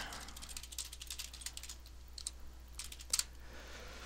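Faint, quick keystrokes on a computer keyboard as a line of code is typed, with one louder key click about three seconds in.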